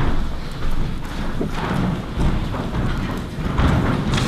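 Irregular low thuds and light knocks: footsteps of a person walking across the meeting-room floor, picked up by the table microphones.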